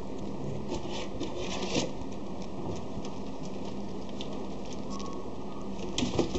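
Light scattered patter and scratching of a puppy's paws moving about on a mat close up, with a busier flurry about two seconds in, over a steady low hum and hiss.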